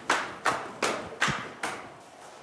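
Hand claps in a slow, even rhythm, about two and a half a second, five in all, stopping shortly before the end.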